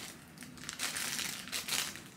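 Irregular crinkling and rustling of things being handled and packed up, quiet at first and busier from about half a second in, with short sharp crinkles.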